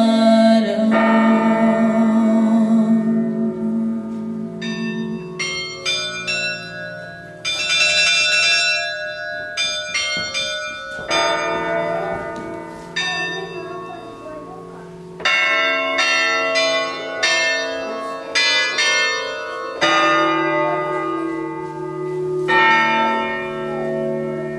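Electronic carillon playing the sampled sound of the Lithuanian Liberty Bell from a keyboard. Phrases of struck bell tones, each ringing on into the next, sound over a sustained low tone, with short gaps between the phrases.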